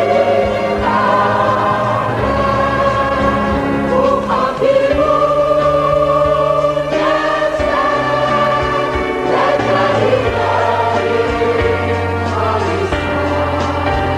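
Mixed church choir singing an Arabic hymn in held chords over a steady bass accompaniment.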